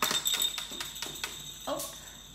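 Small Klask game pieces spilling out of their bag and clattering across the table: a quick run of many light clicks and rattles, with a thin ringing note under them.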